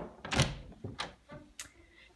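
A pantry door being opened by its knob: a few sharp clicks and knocks from the latch and door, the loudest about half a second in.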